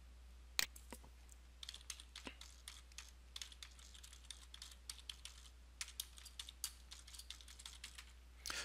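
Computer keyboard typing, faint: one click shortly after the start, then an irregular run of quick key clicks from about a second and a half in until near the end, over a low steady hum.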